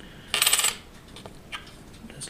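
A coin clinking on a hard surface: a brief rattle of quick metallic clicks lasting under half a second, then one faint tick about a second later.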